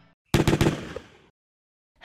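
Sound effect of a short burst of rapid automatic gunfire. It starts suddenly and dies away within about a second.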